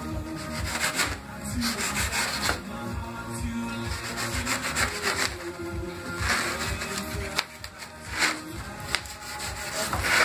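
Sandpaper rubbing on a styrofoam sculpture by hand, in irregular back-and-forth strokes.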